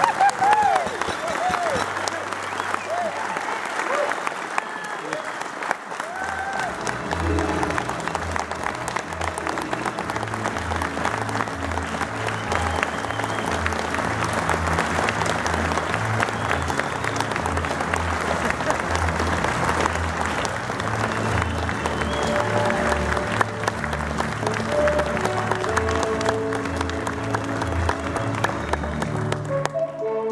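A banquet audience applauding and cheering, with whoops near the start. About six seconds in, music with a steady bass beat starts under the continuing applause.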